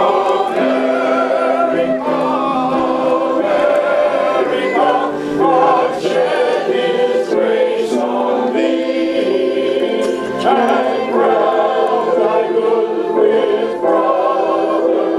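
A congregation singing a hymn together, many voices holding long, sustained notes.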